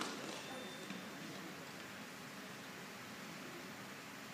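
Applause dying away at the start, then a quiet hall with faint voices murmuring over a steady hiss.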